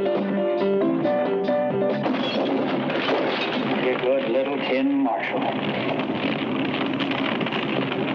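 Film soundtrack music: sustained plucked-string notes for about two seconds, then a dense, noisy mix with brief snatches of voices.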